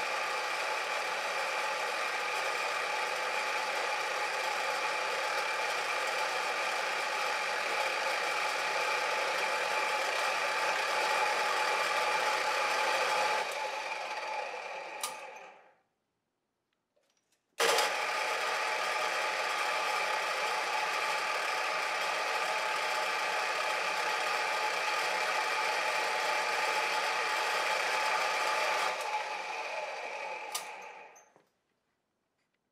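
Pillar drill running steadily, its bit boring into the wooden body of a bassoon. About halfway through it runs down to silence, then starts again suddenly a couple of seconds later and runs on.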